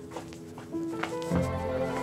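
Dramatic background music: soft held notes, with a deeper, louder note coming in about a second and a half in. A few faint footsteps sound under it.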